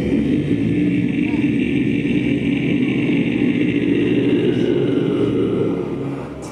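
Live drone music: a low, distorted voice chanting into a microphone over a dense, steady drone.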